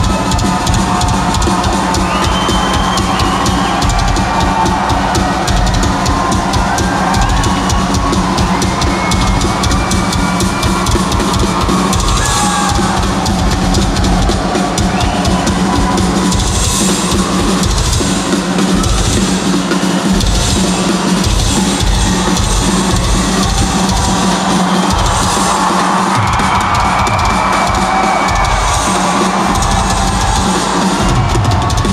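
Live rock drum solo on a full drum kit: fast bass-drum strokes under snare hits, with cymbal crashes several times.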